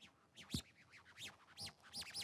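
A quiet pause with faint rustling and a single short knock about half a second in.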